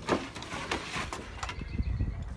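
Pit bull puppy playing tug-of-war with a rope toy on a wooden deck: one short sharp sound just after the start, then faint scuffling and light knocks from paws and rope on the boards.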